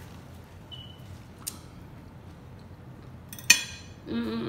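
A fork clinking on a plate: a faint click about one and a half seconds in, then a sharp, loud metallic clink near the end that rings briefly.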